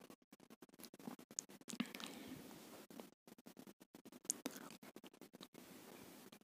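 Faint scratchy background noise, close to silence, broken by a few soft clicks about a second and a half in and again past the four-second mark.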